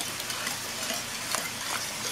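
A whisk stirring thick condensed cream soup in a casserole dish, with small scattered clicks against the dish. Under it, a steady sizzle of hamburger and onion browning in a frying pan.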